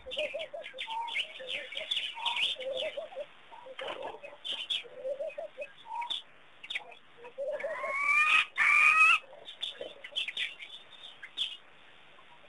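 Wild birds calling at a waterhole: a mix of chirps and repeated short notes, with two louder rising calls about eight and nine seconds in.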